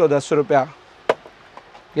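A man's voice says one word, then a single sharp click about a second in.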